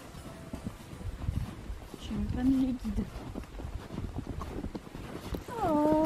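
A horse's hooves and people's footsteps crunching irregularly in snow as the mare is led at a walk. A brief hum comes about two seconds in, and a louder call with a falling start near the end.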